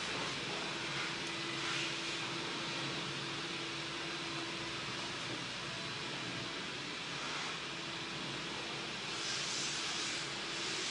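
Steady hissing machine noise from a truck being cleaned in the garage, loud enough to compete with the voice, with a faint low hum through parts of it.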